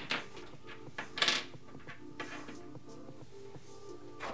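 Background music playing steadily, with a brief rustle of objects being handled and moved on a tabletop about a second in.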